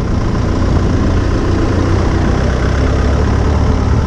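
Steady low engine drone with road noise from a car being driven.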